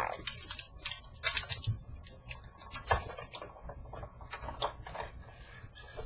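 Sizzix Big Shot die-cutting machine being hand-cranked, a stack of cutting plates with a steel snowflake die and a piece of aluminium soda can pressing through its rollers. It gives irregular dry clicks and creaks, densest in the first second or so.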